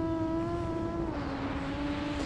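Brushless motors of a 6-inch FPV freestyle quadcopter (Hyperlite 2205.5 1922KV) running in flight, a steady buzzing whine picked up by the onboard camera. The pitch steps down slightly about a second in as the motors slow.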